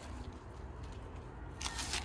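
Kitchen knife cutting through the crisp leaf stalks of a raw cauliflower on a wooden cutting board, with one short crunchy snap near the end, over a low steady background rumble.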